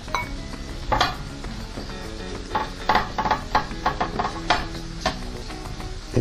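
A pastry brush clicking and scraping against a small ceramic bowl as it is dipped in beaten egg, a dozen or so irregular light taps, over the steady sizzle of onion and leeks frying in pans.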